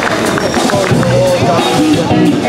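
Electric guitar and bass guitar playing a few held notes as a rock band starts up, over the fading end of crowd applause. A deep bass note comes in about a second in.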